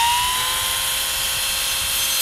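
OSUKA OCGT407 cordless grass trimmer's brushless motor spinning up to full speed. Its rising whine levels off about half a second in and then runs steady and high-pitched with the head free of the plant.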